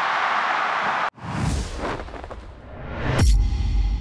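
Stadium crowd noise that cuts off abruptly about a second in, followed by a broadcast transition sound effect: a whoosh with a low rumble, then a rising swoosh that lands on a deep boom with a ringing tone as it fades.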